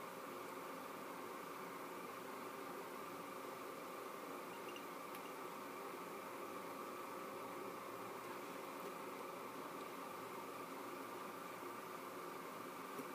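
Steady faint hiss of room tone, with no distinct event.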